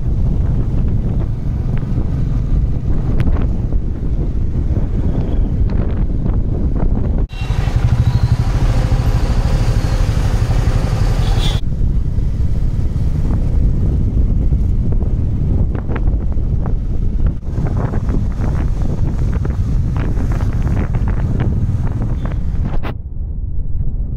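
Royal Enfield Classic 350's single-cylinder engine running steadily as the motorcycle rides along, with road and wind noise. The sound changes abruptly at several cuts, with a hissier stretch from about seven to eleven seconds in.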